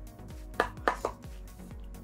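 Background music with a steady beat. About half a second in come two or three sharp clicks of small hard objects being handled, as makeup tools are picked up.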